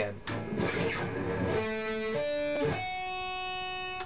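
Electric guitar with a clean tone playing a D major chord one string at a time in a sweep: a quick run of notes, then single notes picked about half a second apart. The last note is held, ringing out from near three seconds in, and is cut off abruptly at the end.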